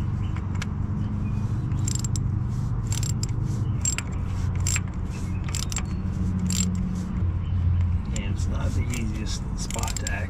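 Quarter-inch drive ratchet clicking in short, irregular runs as it turns the crankshaft position sensor's small retaining bolts, with light metal tool clatter, over a steady low hum.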